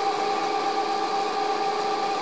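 Homemade motor-generator rig running steadily: an electric motor drives a generator built from a 0.75 kW water-pump motor fitted with a 9 kg flywheel, making an even hum with several steady whining tones. It is running under the load of a bank of incandescent bulbs.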